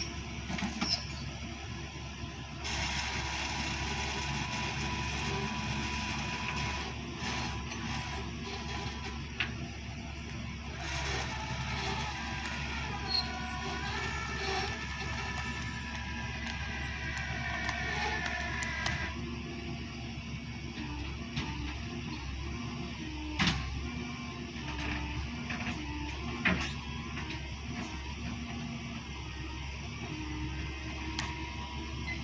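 Flatbed tow truck's winch and engine running as the cable drags a roughly 10,000 lb cottonwood log up the tilted bed. A steady whine comes in about three seconds in and stops about two-thirds of the way through, with a few sharp knocks along the way.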